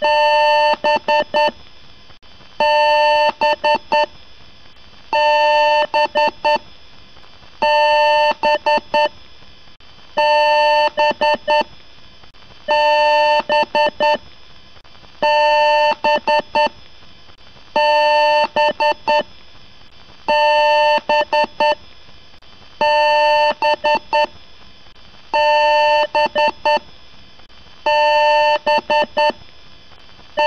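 A PC's power-on self-test beep code: one long electronic beep followed by four short quick beeps, the pattern repeating about every two and a half seconds, over a steady faint hum.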